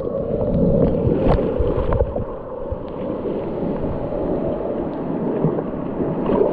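Sea surf sloshing and gurgling around a camera held at the water's surface, with scattered small splashes and knocks, a sharper one about a second in.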